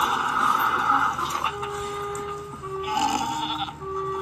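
Cartoon robot-dinosaur roar, heard through a laptop's small speaker, ending about a second in, followed by a few held musical notes stepping down in pitch.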